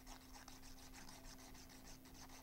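Near silence: faint, rapid scratchy rubbing of a glue bottle's nozzle tip being drawn along a folded tab of glitter paper as glue is applied.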